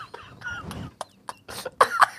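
Two men laughing hard: breathless, wheezing laughter with a few short high-pitched squeaks, then a louder burst of laughter near the end.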